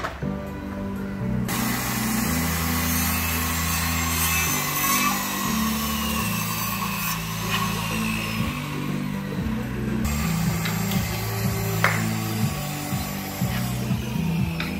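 Handheld circular saw cutting a wooden board: a harsh, rasping whine that comes in about a second and a half in and keeps going, over background music with a steady bass line.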